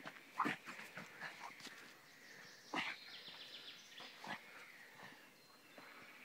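A pug's short grunts and snuffles, a handful of them, the loudest about half a second in and another strong one near three seconds in.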